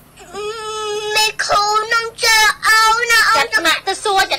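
A high-pitched singing voice, starting about a quarter second in and running in short sung phrases.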